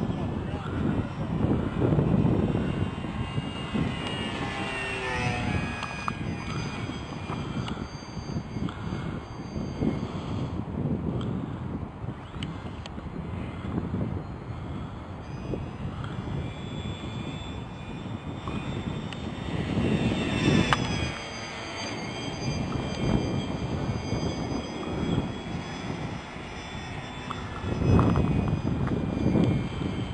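Radio-controlled P-47 Thunderbolt scale model flying passes, its motor and propeller drone swelling and fading, with the pitch falling as it goes by.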